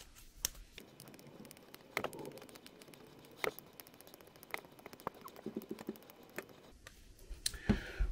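Nylon worm-drive hose clamp being tightened by hand: faint plastic clicking and ticking as the wing-nut screw is turned and draws the ridged band through, with a few louder clicks.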